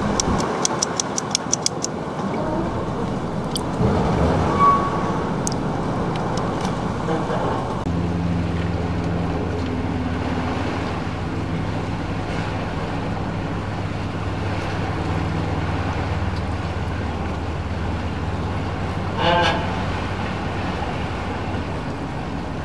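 Ambient outdoor background with a quick run of ticks near the start. About a third of the way in, a steady low engine hum sets in and keeps going.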